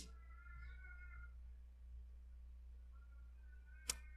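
Near silence: quiet room tone with a steady low hum. A faint high-pitched call lasts about a second near the start, and there is a single click just before the end.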